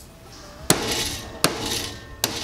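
Two hammer blows smashing 3D-printed plastic parts on a towel-covered lead block. The first blow is followed by a brief rattle of broken plastic bits.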